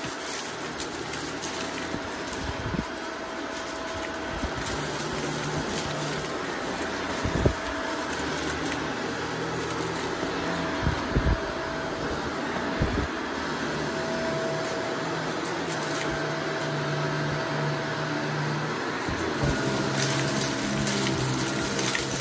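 Shark DuoClean upright vacuum running steadily with its brushroll on a rug, sucking up confetti and glitter, with a few sharp clicks and crackles as bits of debris are pulled in.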